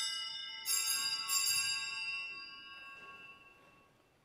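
Altar bells shaken twice about a second apart, ringing on from an earlier shake and then dying away over a couple of seconds. They are the Mass's signal bell as the host is about to be shown before communion.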